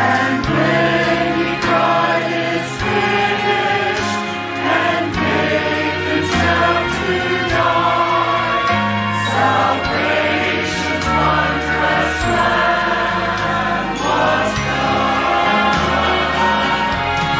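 A group of voices singing a gospel song with instrumental accompaniment, held chords over a bass line that changes note every second or two.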